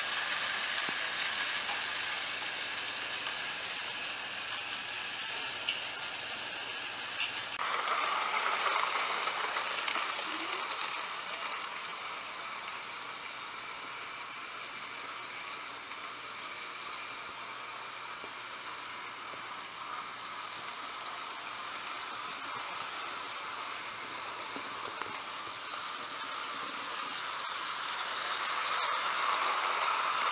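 OO gauge model trains running on track laid on a wooden floor: a steady whirr of the small motors and wheels rolling on the rails, with an abrupt change in the sound about seven seconds in. It gets louder near the end as coaches pass close by.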